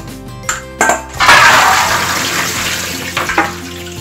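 Soaked black-eyed beans and their soaking water poured from a basin into a metal sieve in a steel sink. A loud gush of water starts about a second in and tails off over the next two seconds, with a few knocks of the basin and sieve.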